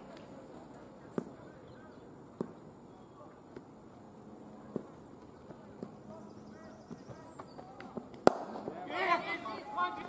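Leather cricket ball struck by a bat: one sharp crack about eight seconds in, the loudest thing here, followed at once by players' shouts. A few fainter single knocks come earlier.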